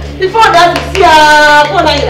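A woman shouting in a quarrel, with one long, loud drawn-out cry about a second in, over a steady low hum.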